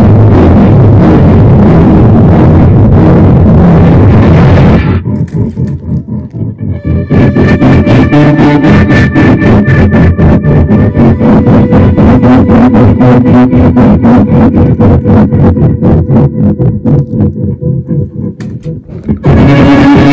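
Heavily amplified violin run through effects: a loud, dense, distorted wall of sound that breaks off about five seconds in. It is followed by fast, evenly repeating pulses over a few held pitches, and the loud distorted texture returns just before the end.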